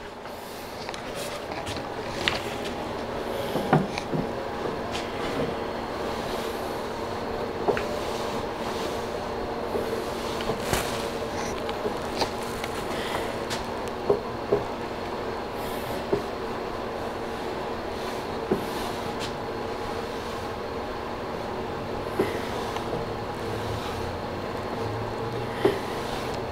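A wooden drawer slid repeatedly in and out of its opening in a close fit, a continuous rumble of wood rubbing on wood broken by scattered light clicks and knocks.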